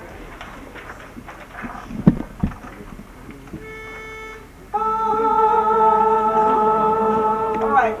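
Shape-note singing class murmuring and turning pages, with two thumps about two seconds in. A single steady note then sounds to give the pitch, and a moment later the whole class sings a sustained chord together, held about three seconds until it breaks off.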